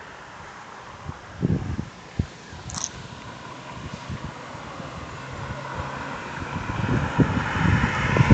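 A small Nissan sedan approaching along the road, its tyre and engine noise growing steadily louder over the last few seconds. A few low thumps come about one and a half and two seconds in.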